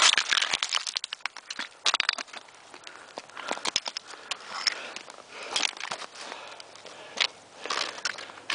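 Hiking footsteps on loose rock scree: boots crunching and scuffing, with stones clicking and clattering underfoot in an irregular run of steps.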